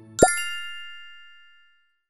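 Logo sound effect: a quick pop that slides upward in pitch, followed by a bright bell-like chime that rings and fades away over about a second and a half.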